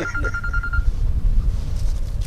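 A single steady electronic beep, about a second long, over a continuous low rumble.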